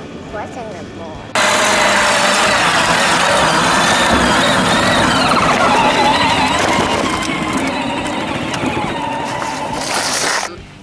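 Battery-powered ride-on toy vehicle driving right next to the microphone, its electric motor and gearbox whining and its plastic wheels rolling over concrete; the sound comes in suddenly and loudly about a second in.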